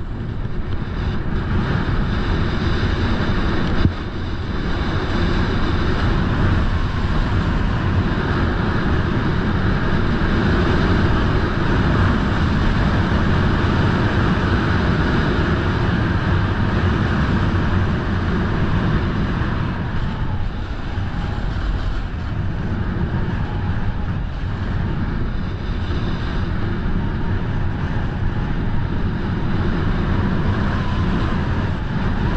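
Wind rushing over a body-mounted action camera's microphone while a snowboard slides and scrapes steadily down packed snow. There is one short knock about four seconds in.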